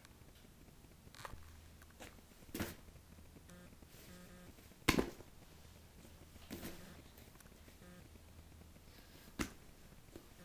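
Faint room tone with a handful of soft knocks and bumps from someone moving about close to the camera and handling it, the sharpest about halfway through.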